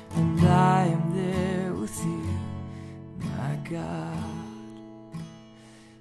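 Steel-string acoustic guitar, capoed at the second fret and played in G shapes, strumming chords with a man's voice singing a held, wavering note over them. The strums come about every one to two seconds, and the last chord rings out and fades near the end.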